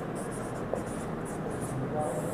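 Writing on a board: a series of short, scratchy strokes over a low room hum.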